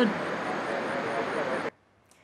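Steady outdoor motorbike and traffic noise, cutting off abruptly about 1.7 s in.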